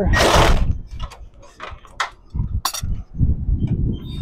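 Impact wrench driving a 13 mm socket on a long extension and U-joint to break loose a horizontal engine motor mount bolt, running in short bursts, with a few sharp metallic clicks in between.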